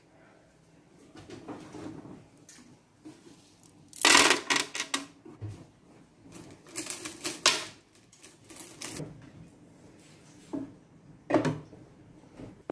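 Small decorative aquarium pebbles dropped and poured into an empty plastic tub, clattering on the plastic floor and against each other in several bursts, the loudest about four seconds in.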